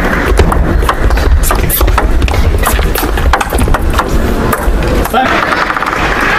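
Table tennis rally: the plastic ball clicking off the rackets and the table in a quick, irregular run of sharp knocks, over a steady low rumble of the hall. The knocks end about five seconds in as the point is won.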